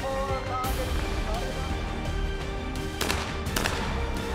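Background music, and near the end two shotgun shots about half a second apart from a trap shooter's over-and-under shotgun.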